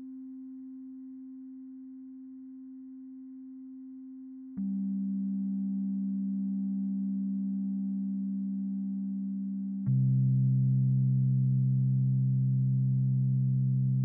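Steady, pure electronic low tones of an alpha-wave relaxation track, building in layers. A single tone sounds first. A lower, louder tone joins about four and a half seconds in, and a still lower, louder one joins about ten seconds in.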